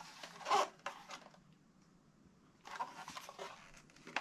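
Handling noise from a plastic-cased variable frequency drive being turned over in the hands: brief rustling and scraping with small clicks, loudest about half a second in, then another short spell near three seconds.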